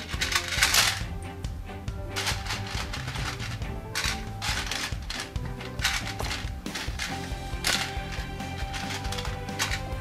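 Hard plastic Lego pieces clattering in bursts as a hand rummages through a plastic parts tray, over background music.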